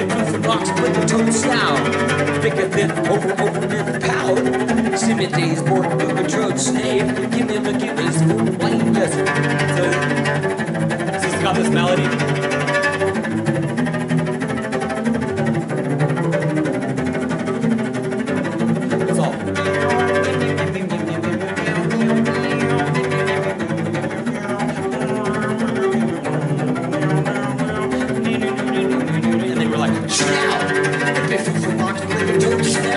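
Solo cello played with the bow, running through a repeating rhythmic figure of stepping notes without a break.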